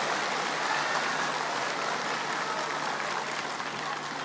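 A large audience applauding: dense, steady clapping that slowly eases off.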